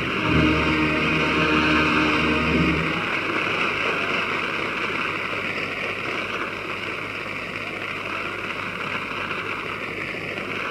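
The last held chord of the ballad's accompaniment stops about three seconds in, leaving a steady hiss of recording noise.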